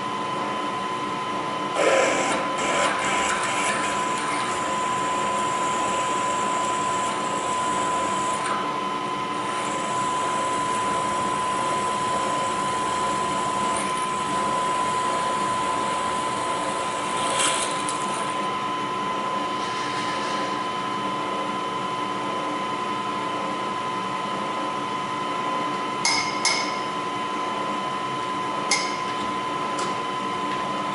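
Milling machine spindle running with a steady whine while drilling holes in a metal part. A few sharp clinks are scattered through it, near the start, the middle and the end.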